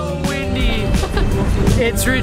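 Strong wind buffeting the camera microphone, a heavy low rumble that sets in just after the start, mixed with a voice and background music.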